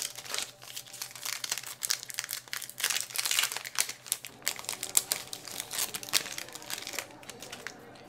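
Foil wrapper of a Magic: The Gathering booster pack crinkling as it is handled and torn open, a dense run of irregular crackles that thins out near the end as the cards are slid out.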